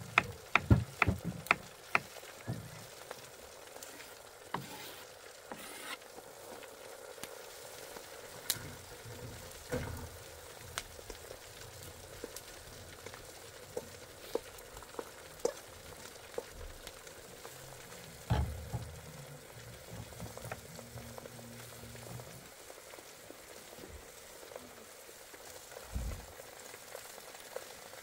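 A knife chopping on a wooden cutting board, about three cuts a second, for the first couple of seconds. Then sliced mushrooms sizzle steadily in a frying pan on a charcoal grill, with scattered clicks and scrapes of a utensil stirring and a few louder knocks.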